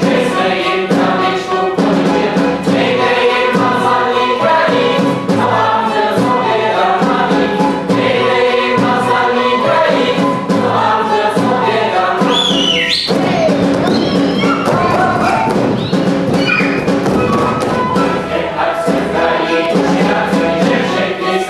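Live folk music: a folk ensemble's chorus singing with a small folk band. About two-thirds of the way through the music changes sharply, with high gliding voices calling out over a denser, noisier passage.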